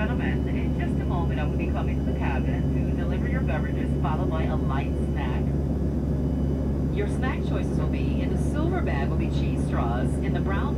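Steady cabin drone of an Embraer ERJ-135's rear-mounted Rolls-Royce AE 3007 turbofans at climb power, heard inside the cabin, with a low hum under it. Indistinct voices of people talking sit over the drone throughout.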